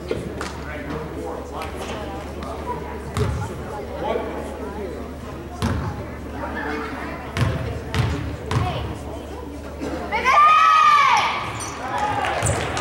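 A basketball bouncing on a hardwood gym floor a few times, ending in three quick bounces before a free throw, over steady crowd chatter. Near the end a loud, high voice calls out, its pitch rising and then falling, as the shot goes up.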